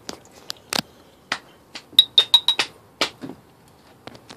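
Irregular sharp ticks and clicks from a glass beaker of solution sitting on a hot electric coil hotplate, with a quick run of four high, ringing glassy clinks about two seconds in.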